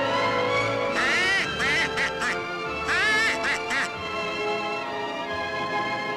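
A duck call blown in two runs of quacks, the first about a second in and the second about three seconds in, over music.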